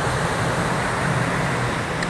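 Steady rush of water running down a concrete dam spillway and splashing from a small side cascade into the shallow pool at its foot.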